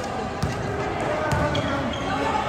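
A basketball being dribbled on an indoor court floor, its bounces landing as sharp thuds about a second apart, over background voices.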